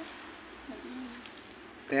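A dove cooing faintly, one low coo about a second in, during a quiet stretch.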